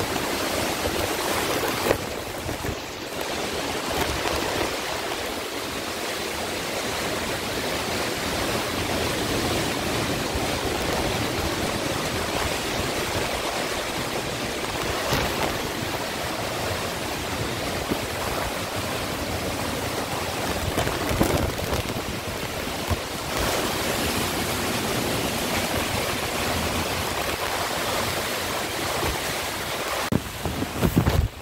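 Heavy hurricane rain pouring steadily, with wind blowing through it.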